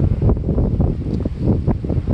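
Wind buffeting the microphone: a loud, uneven low rumble that rises and falls in quick gusts.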